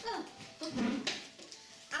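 A dog making short vocal sounds, mixed with people's voices in a room.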